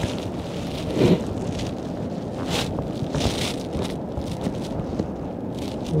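Strong wind buffeting the microphone, a steady rumbling rush that surges in gusts several times.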